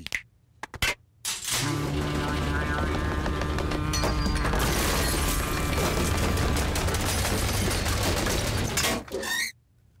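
Cartoon robot shaking itself violently against a metal safe to hit its structural resonance frequency: a loud, continuous metallic rattling with a steady low hum. It starts about a second and a half in and cuts off near the end.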